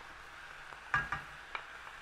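Chopped onions frying in oil in a stainless steel pan, a faint steady sizzle. A few sharp clicks about a second in and again about half a second later come from a wooden spoon knocking and scraping as chopped garlic goes into the pan.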